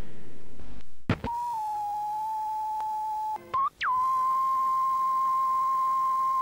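VHS static hiss that cuts off with a click about a second in, followed by a steady, pure electronic test-tone beep. The tone breaks briefly with a glitchy chirp partway through, then resumes slightly higher in pitch and holds steady.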